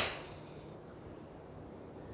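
The fading tail of a golf club striking a ball off the turf, dying away within the first moment, followed by a low steady background.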